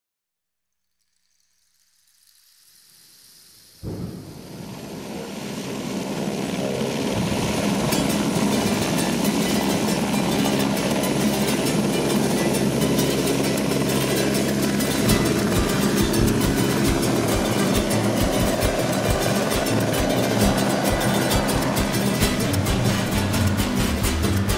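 Turbine helicopter lifting off and climbing away, its rotor and engine noise fading in over the first few seconds and then holding steady.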